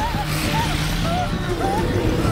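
Indoor fireworks hissing and crackling in a loud, continuous din, with short wavering cries from a crowd of pupils over it.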